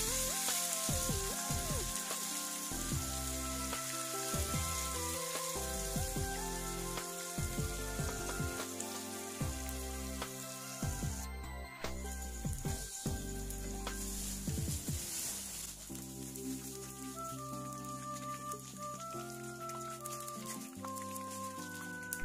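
Tofu pieces deep-frying in hot oil in a non-stick wok with a steady sizzle. Background music with held notes plays over it.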